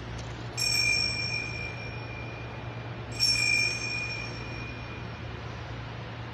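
Small altar bell struck twice, about two and a half seconds apart, each stroke ringing out and fading over about two seconds, over a steady low hum. The bell is rung at the elevation of the chalice during the consecration of the Mass.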